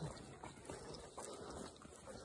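Faint footsteps of people walking on a dirt and leaf-litter forest trail, soft uneven crunches and scuffs.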